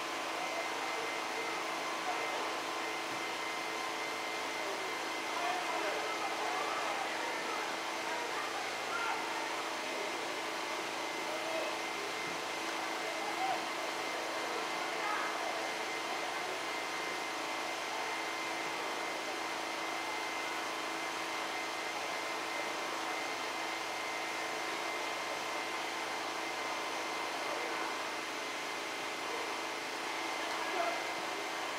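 Indistinct voices in the background over a steady mechanical hum with a faint constant high whine.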